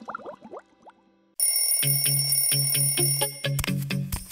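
Short rising bubbly blips fade out, followed by a brief silence. About one and a half seconds in, a bell starts ringing rapidly, and cartoon background music with a steady bass comes in under it.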